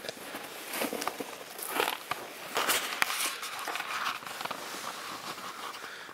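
Footsteps crunching through deep snow, irregular and uneven, with some rustle of clothing and handling of the handheld camera.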